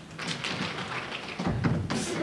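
Feet scuffing and tapping on a stage floor as a performer gets up from lying down and moves about, with a heavier thud about three-quarters of the way through and a sharp knock at the end.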